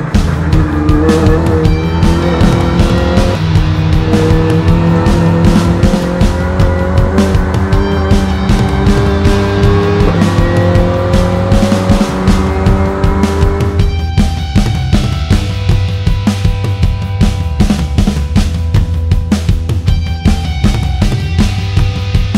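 A race car's engine heard from inside the cockpit, accelerating through the gears: its pitch climbs and drops back at upshifts about three and ten seconds in. It plays over rock music with a steady drum beat, and from about fourteen seconds in only the music is left.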